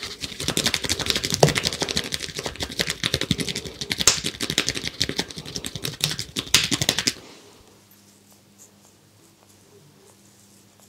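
Hands rubbing and kneading a man's ear in an ear massage: a dense, rapid crackle of skin and hair rubbing that stops suddenly about seven seconds in.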